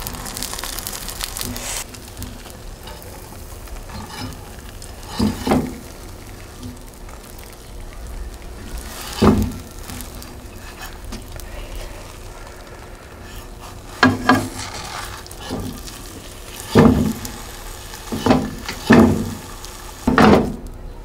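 Egg batter and a stuffed sea cucumber frying in oil in a cast-iron pan, a steady sizzle that crackles most in the first two seconds. A handful of short louder sounds stand out over it, near five and nine seconds in, twice around fourteen seconds, and three times near the end.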